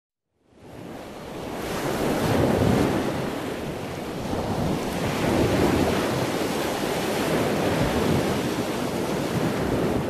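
Sea waves washing on a rocky shore, mixed with wind and wind noise on the microphone. The sound fades in just after the start and rises and falls in slow surges.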